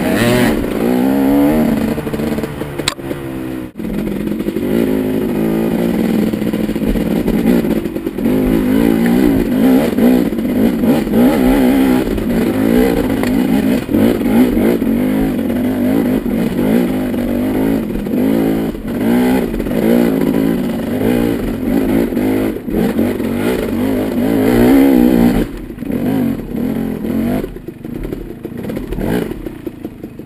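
KTM single-cylinder dirt bike engine revving up and down as the bike is ridden over a rough trail, with the throttle opened and closed again and again. It eases off and gets quieter for the last few seconds.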